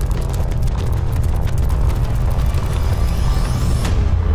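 Cinematic sound design for an animated chip reveal: a deep, steady rumble under a dense patter of short mechanical clicks, with a rising whoosh building near the end.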